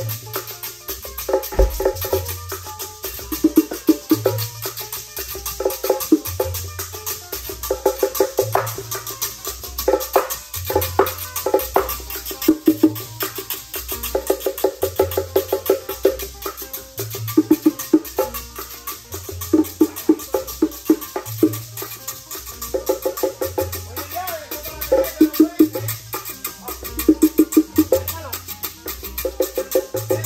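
Changüí band playing an instrumental passage: tres guitar figures over bongos, maracas and a scraper, with a repeating low bass line from a marímbula.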